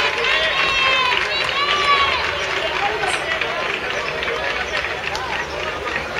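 High-pitched shouts and calls from voices around a youth football pitch, several arching cries in the first two seconds, then a mix of shouting and general hubbub.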